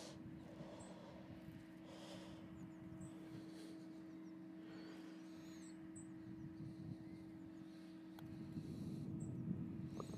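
Quiet open-air ambience on a putting green: a steady low hum, faint high bird chirps here and there, and a single sharp click about eight seconds in as the putter face strikes the golf ball.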